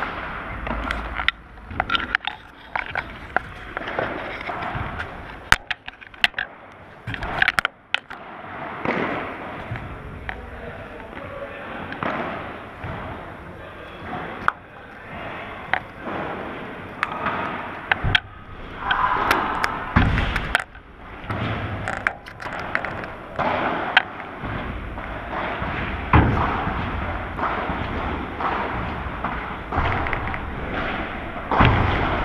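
Bumps and scrapes from an action camera being handled and set in place, then a padel game: sharp, scattered knocks of rackets striking the ball and the ball bouncing.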